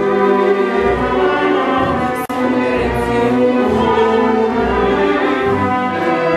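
Orchestra with bowed strings accompanying operatic singing in a staged operetta or opera performance, with sustained, vibrato-laden notes. There is a very brief dropout in the sound a little over two seconds in.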